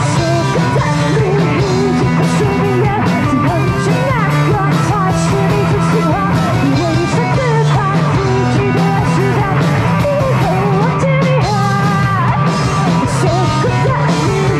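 A live rock band playing electric guitars and drums, with a woman singing over them. The music is loud and continuous throughout.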